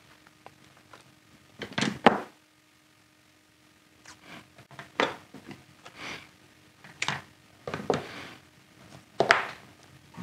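Vinyl electrical tape being pulled off the roll in short tugs and wrapped around a wire-nut splice: a string of brief rasps starting about four seconds in, over a faint steady hum.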